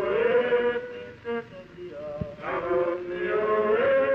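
Men singing a traditional Bahian work chant (canto de trabalho) of the xaréu net-fishermen, in long drawn-out sung phrases. A second phrase begins about halfway through.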